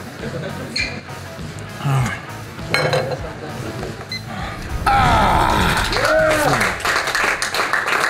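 Background music with voices, getting louder about five seconds in.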